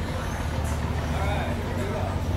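A steady low rumble, with people talking in the background.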